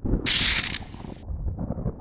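Mechanical rattling sound effect accompanying a logo, with a loud hiss about a quarter second in that lasts about half a second, and an uneven rattle running under it and on after it.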